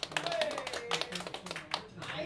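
A small audience clapping in scattered, irregular claps, with one voice calling out briefly near the start.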